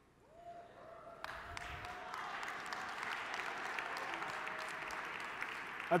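Audience applauding. The clapping swells over about the first second, then holds steady.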